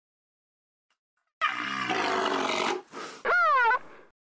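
An animal roar starts about a second and a half in and lasts over a second. It is followed by a short pitched call that wavers up and down and stops just before the end.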